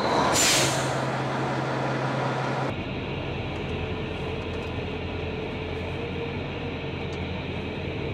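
Heavy airport fire truck's diesel engine running at idle, with a burst of air hiss about half a second in. The sound changes abruptly near three seconds in to a steadier, lower engine rumble heard from the cab.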